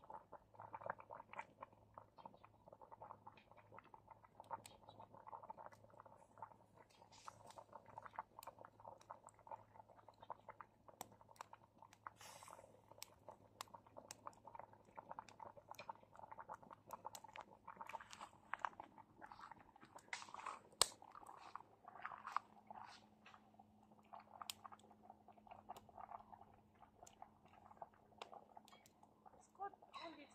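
Faint crackling of a wood fire's embers, with scattered small pops and a few louder snaps.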